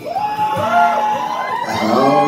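Live solo acoustic music: a strummed acoustic guitar with a sung line, and audience members whooping over it in several overlapping calls that rise and fall in pitch.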